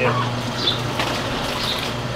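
Duck scalder running: a steady low electric hum under the churning of hot water as ducks are stirred through it with a rod.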